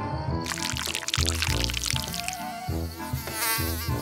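Background music with a hissing spray sound effect starting about half a second in, for the bug spray being fired, and a brief warbling buzz near the end.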